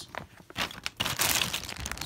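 Packaging in a box of Scentsy testers being handled and sorted through by hand: irregular rustling and crinkling with small crackles, starting about half a second in.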